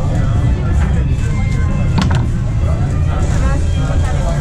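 Foosball table in play: two sharp knocks close together about two seconds in, over a steady low rumble and background voices.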